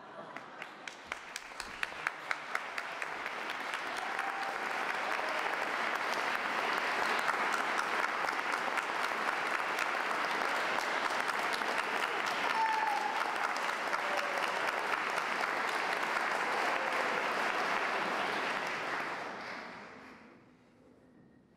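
Audience applause: a few separate claps at first, swelling within a few seconds into steady clapping, then dying away near the end.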